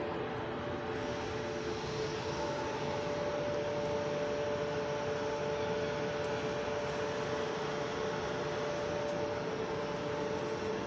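Steady machinery drone with two constant hum tones over a wide noise, unchanging throughout.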